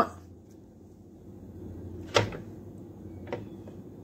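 A sharp plastic click about two seconds in and a fainter one a second later, as a hand handles the action figure and turns it around on its stand.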